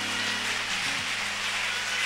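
Low sustained keyboard chords that shift pitch a few times, under a loud, even rushing noise.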